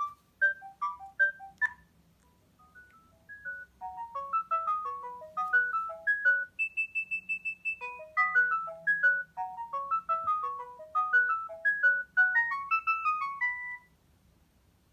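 Sagem myC2-3 mobile phone playing one of its original ringtones through its small speaker: a quick electronic melody of short notes. A brief opening phrase is followed by a pause about two seconds in, then a longer run with one high note held for over a second near the middle, and the tune stops at the end.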